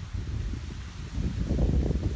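Wind buffeting the microphone: an uneven low rumble that swells in the last half second.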